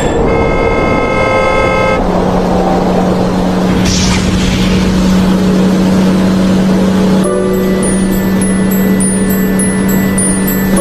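A cartoon van's horn honking for about two seconds, followed by a steady engine hum.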